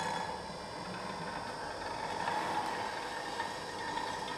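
Metal cymbal-like discs giving a steady, shimmering metallic ring with many overtones, while the smaller disc, dragged by a wire, scrapes against the larger one.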